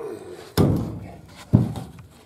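Two heavy wooden thuds about a second apart: long dead lodgepole pine poles are dropped onto a stacked load of poles and logs, wood knocking on wood.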